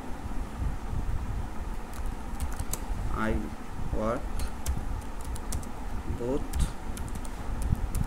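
Typing on a computer keyboard: scattered keystrokes over a steady low rumble. A few short voice sounds come in about three to four seconds in and again past six seconds.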